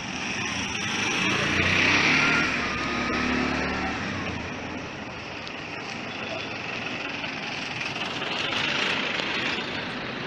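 Street traffic: a car drives past close by, its engine and tyre noise loudest about two seconds in, then traffic noise swells again near the end as another car approaches.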